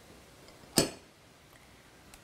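A single sharp clink of glass kitchenware, a glass bowl struck once about a second in, with a brief ring.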